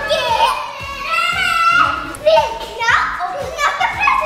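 A small child's voice making high, wordless vocal sounds that bend up and down, with music in the background.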